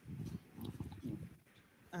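Faint, muffled voice murmuring away from the microphone, then a hesitant "um" just at the end.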